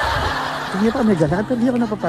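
A woman laughing softly, after a brief rush of noise in the first moment.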